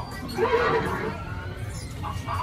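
A horse whinnying once, starting about half a second in and lasting under a second.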